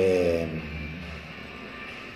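A man's drawn-out hesitation sound ("ehh"), falling slightly in pitch, in the first half second, then quiet room background with a faint steady high-pitched hum.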